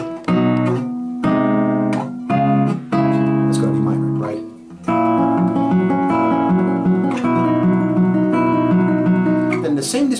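Classical guitar playing a slow chord passage: a few separate chords plucked one after another, a brief pause, then from about five seconds a steady run of plucked notes over held chords.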